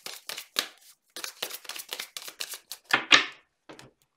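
Tarot cards being shuffled by hand: a quick run of light card slaps and flicks, then a louder rustle with a thud about three seconds in as the deck comes down on the wooden desk.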